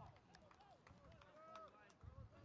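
Faint shouts and calls of football players on the pitch, heard from a distance, with a few light clicks among them.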